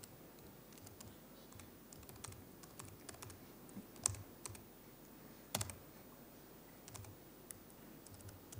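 Faint, irregular keystrokes on a laptop keyboard as commands are typed into a terminal, with two louder clicks about four and five and a half seconds in.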